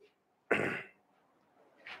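A man coughs once, short and sharp, about half a second in.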